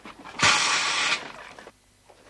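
Fake cannon firing: a single short, loud hissing puff lasting under a second, starting about half a second in and cutting off sharply.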